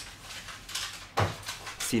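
A pause in a man's narration: low room tone with one brief soft sound just after a second in. The next spoken word begins right at the end.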